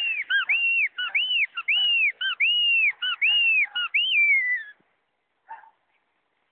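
A person whistling to call a dog back: a run of short rising-and-falling whistled notes, two or three a second, ending in a longer falling note about four and a half seconds in.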